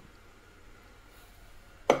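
Quiet room tone: a faint steady background with no distinct sound, before a man's voice starts right at the end.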